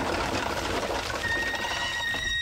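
Live oysters pouring out of a tipped bin into a stainless steel three-way funnel, their shells clattering and rattling as they slide through into the mesh baskets. A steady high whine comes in about a second in.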